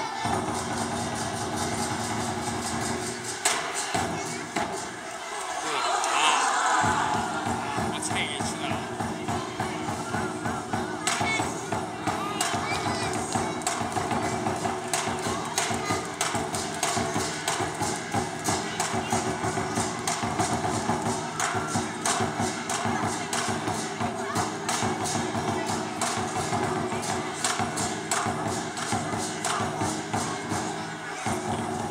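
Lion dance drum beaten in a fast, steady rhythm with clashing cymbals, the traditional accompaniment to a lion dance. The drumming breaks off for a few seconds about four seconds in, then resumes.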